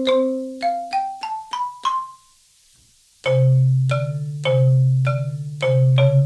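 Sampled marimba voice from a MalletKAT electronic mallet controller with its GigKAT 2 sound module, played with mallets. A quick rising run of single struck notes is followed by a pause of about a second, then a low note sounds under a string of higher strikes at about two a second.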